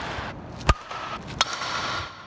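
A softball bat striking a softball off a tee: two sharp cracks, the louder one about two-thirds of a second in and a second one near the one-and-a-half-second mark, over a steady hiss.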